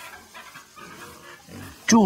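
Domestic pigs grunting quietly and irregularly. A man's voice starts just before the end.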